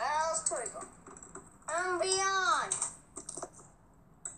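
A child's high voice making wordless calls that slide up and down in pitch, in two stretches, followed by a few light clicks about three seconds in.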